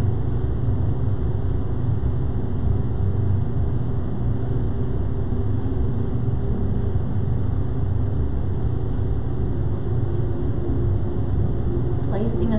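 A steady low rumble of background noise, even and unbroken throughout.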